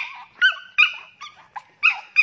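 A Shih Tzu in labour whimpering and yelping in short, high-pitched cries, about four in two seconds, as she strains through a contraction to push out a puppy.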